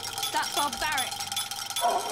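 Metallic rattling of the goblins' clankers in the film's soundtrack, under speech. Near the end a long, falling tone begins.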